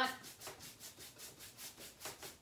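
Wax brush scrubbing liming wax back and forth over a painted oak surface in quick, even strokes, about four a second.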